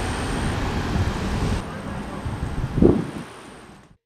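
Outdoor ambience dominated by wind buffeting the microphone: a steady rushing noise mostly in the low end, with a brief louder sound about three seconds in. It fades away near the end.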